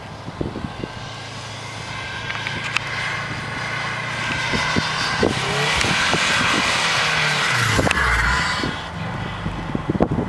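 2004 Subaru WRX STI's turbocharged flat-four engine revving hard while the car spins donuts in snow. It grows louder as the car swings close, is loudest about six to eight seconds in, then drops back.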